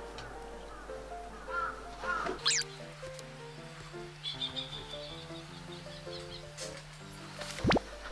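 Background music: a simple melody of short, evenly stepped notes, joined by a held low note from about two and a half seconds in until near the end.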